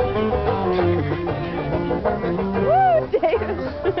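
Swing band playing, with a bass stepping from note to note about twice a second under plucked strings. Near the end a person's voice swoops up and down loudly over the music, then laughter.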